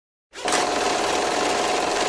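A rapid, even mechanical clatter with a steady hum running through it, starting about a third of a second in: an intro sound effect.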